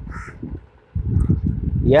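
A crow caws once in the background, a single short harsh call near the start. A low rumble follows in the second half.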